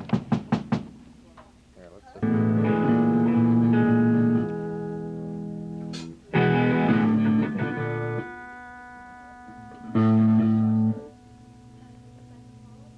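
Amplified electric guitar striking chords and letting them ring: three chords, the first two held about two seconds each and the last cut short after about one. A quick run of clicks comes at the start, and a single sharp click just before the second chord.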